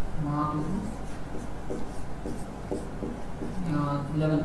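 Marker writing on a whiteboard: a run of short strokes and taps of the tip against the board. A man's voice is heard briefly near the start and again near the end.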